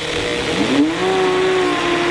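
Bench buffer's cloth buffing wheel running with a fluted sword handle pressed and turned against it, a rushing hiss over the motor's hum. The hum rises in pitch about half a second in and then holds steady.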